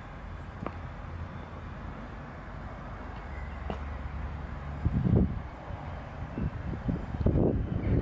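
A steady low rumble, then from about five seconds in, irregular gusts of wind buffeting the microphone.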